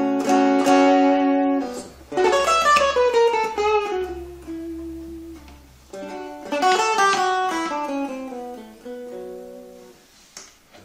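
Hollow-body electric jazz guitar played through a small Marshall Reverb 12 transistor combo amp. Three chords are struck, at the start, about two seconds in and about six seconds in, and after each one a run of notes steps down in pitch as the strings ring out.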